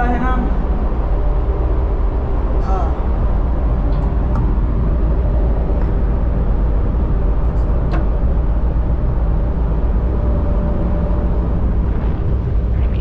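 Steady, loud rumble and hum of a ship's running engines carried up the exhaust uptakes inside the funnel casing, with a few sharp metallic clicks over it.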